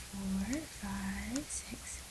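A woman murmuring two short hums under her breath, each held on one pitch and then rising. Faint taps of a stylus on a tablet screen come between them.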